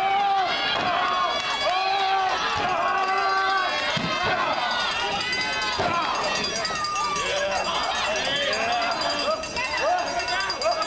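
Crowd of spectators shouting and cheering, many voices overlapping, with a thump about four seconds in and another about six seconds in.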